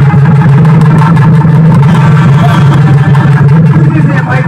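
Loud live folk dance music: double-headed barrel drums struck in rapid beats over a steady low drone.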